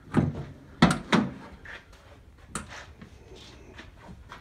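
A few short, sharp knocks and clatters, about four in all, the loudest two close together about a second in.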